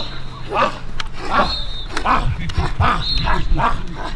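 Young men's voices letting out a rapid string of short, bark-like shouts, roughly one every second, as hype calls.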